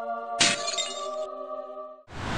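A held chord of intro music, with a glass-shattering sound effect that starts suddenly about half a second in and lasts just under a second.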